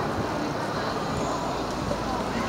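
Steady outdoor city background noise: an even, low rumble of traffic.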